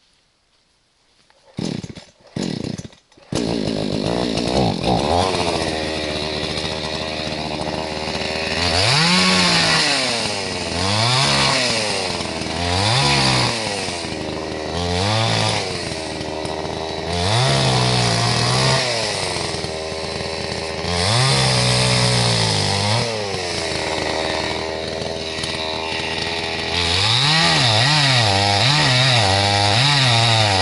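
Petrol chainsaw pull-started: it fires briefly twice about two seconds in and catches on the next pull. It then idles and is revved up and down about a dozen times, and near the end it is held at high revs, cutting into a felled birch log.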